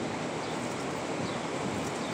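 Steady outdoor city background noise, an even hiss with no distinct events, likely wind on the phone's microphone mixed with distant street traffic.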